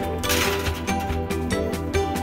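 Instrumental background music with a steady beat. A brief scraping rattle a few tenths of a second in, as a glass baking dish slides onto a wire oven rack.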